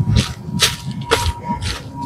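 Footsteps crunching through dry fallen leaves, about two steps a second, coming closer.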